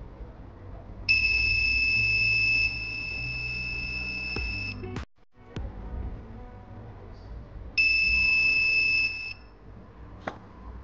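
Mini buzzer on an MQ-2 smoke detector circuit sounding a steady high-pitched tone, twice: first for nearly four seconds, getting quieter partway through, then for about a second and a half. The sensor is picking up smoke and switching the buzzer on.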